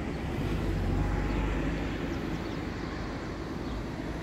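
Outdoor city background noise: a low rumble that swells about half a second in and slowly eases off, over a steady hiss.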